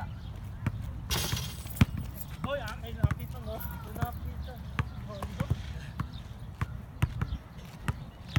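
Basketballs bouncing on an asphalt court, irregular thuds of dribbling from more than one ball, with faint voices talking in between and a brief hiss about a second in.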